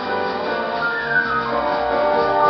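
Big band playing live, its trombone and brass section sounding sustained chords, with one line sliding down in pitch about a second in.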